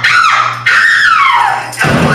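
Live rock band's amplified instruments kicking off a song: two loud sliding notes that fall in pitch, then the whole band comes in together just before the end.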